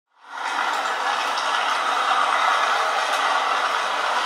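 Steady din of ferry-port traffic and engines, fading in over the first half second, with a few faint ticks.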